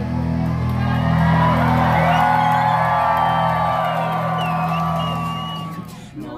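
A rock band playing live, loud and distorted through a phone microphone, with guitar and bass holding a chord and the crowd whooping and shouting over it. The sound fades near the end.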